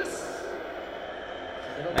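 Faint speech from a televised football match, playing low in the background between louder close-up talk.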